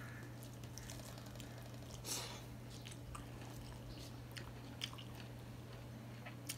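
Close-miked eating sounds: a man chewing mouthfuls of rice and fish curry, with small wet clicks and smacks, and his fingers mixing rice on a steel plate. There is a brief louder rustle about two seconds in, all over a steady low hum.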